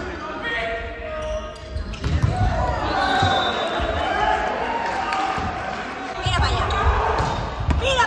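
A volleyball rally on a hardwood gym floor: a few dull thumps of the ball being hit and bouncing, about two seconds in and again around six to seven seconds, with players and spectators calling out in the hall's echo.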